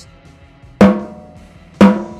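Two snare drum rimshots about a second apart, each a sharp crack followed by a ringing tail. The stick is driven into the head and kept there instead of being allowed to rebound, which is the technique to avoid.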